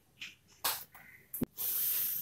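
A man's breathing and mouth noises between sentences: a few short hissing breaths and a click, then a longer hiss of breath about a second and a half in.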